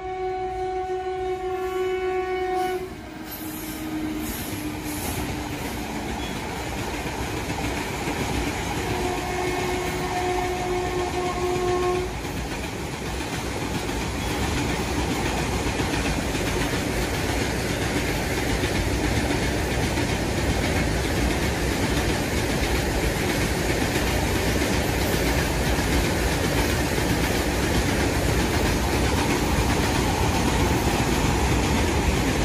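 Train sound effect: a train horn sounds for about the first three seconds and again for about three seconds near the one-third mark, over the steady rumble and clatter of a moving train that slowly grows louder.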